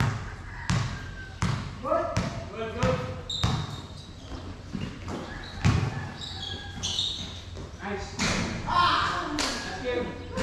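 Basketball bouncing on a hard court during a pickup game, a string of irregular knocks, with players' voices calling out over it.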